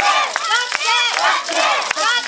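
A troupe of young women yosakoi dancers shouting calls together in high voices, their shouts overlapping, with a few sharp clicks among them.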